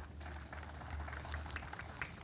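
Faint background sound in a pause in the speech: a steady low hum with light, scattered crackling ticks.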